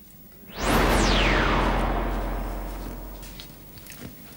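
Electronic whoosh sound effect, the cue for the dungeoneer passing through a doorway into the next room. It starts about half a second in as a sweep falling from very high, over a deep rumble, and fades away over about three seconds.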